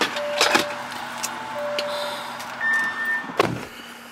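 Handling sounds inside a car: two sharp knocks, one about half a second in and a louder one near the end, with short soft electronic beep tones at two alternating pitches sounding on and off over a low steady hum.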